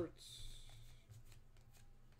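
Football trading cards sliding against one another as a stack is flipped through by hand. There is a soft swish in the first second, then faint light ticks of card edges.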